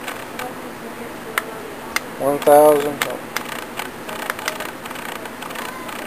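Scattered light clicks from a handheld digital tachometer being handled and its buttons pressed, over a faint steady hum.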